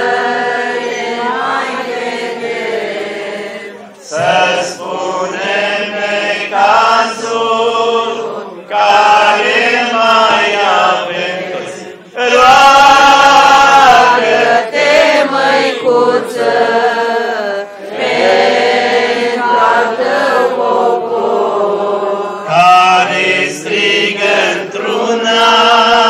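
A crowd of worshippers singing an Orthodox church hymn together, in long sung phrases with brief pauses for breath between them.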